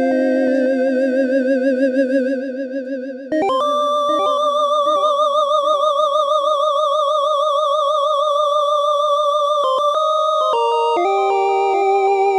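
Teenage Engineering OP-1 synthesizer playing long monophonic lead notes with its tremolo LFO applied, the pitch and volume wavering steadily. The first note fades about two and a half seconds in, a new note starts about three seconds in and is held for around six seconds, and a few shorter notes follow near the end.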